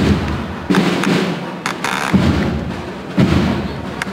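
Slow, low, muffled drum beats, coming at an uneven pace of roughly one a second.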